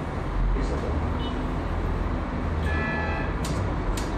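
Steady low rumble of auditorium room noise in a pause between sentences, with a brief snatch of voice near the end and two sharp clicks.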